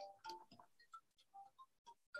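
Near silence over a video-call stream, with faint, scattered short ticks and blips.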